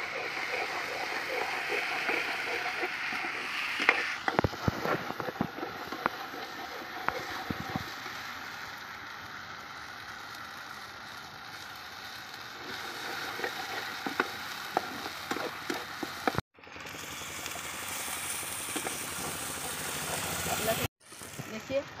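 Onions and ginger-garlic paste sizzling in a kadhai, being fried for a curry masala, with a metal slotted spoon scraping and tapping against the pan as it is stirred; the knocks cluster about four to eight seconds in. The sound cuts off abruptly twice near the end.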